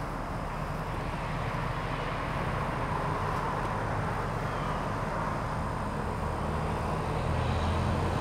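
A steady low mechanical hum, with a rushing noise that swells and then fades around the middle.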